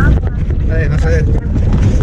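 A car driving on a dirt road, heard from inside the cabin: a heavy, steady low rumble of engine and road, with wind buffeting the microphone. A brief voice comes in about a second in.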